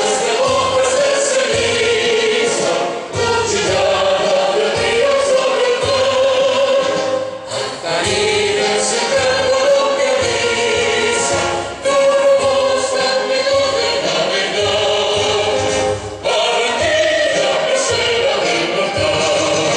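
A large group of schoolchildren singing together in unison, the lines held and broken by short breaths about every four seconds.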